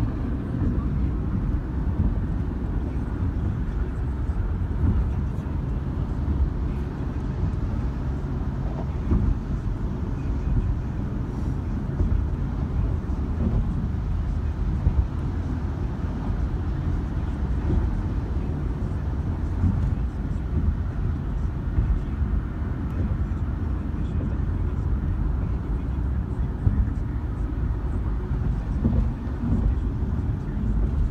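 Road and tyre noise of a car driving on a highway, heard inside the cabin as a steady low rumble.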